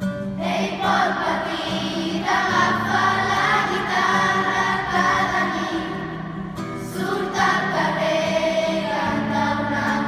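A children's choir singing to acoustic guitar accompaniment. One sung phrase runs until about six seconds in, and after a short breath a second phrase begins about a second later.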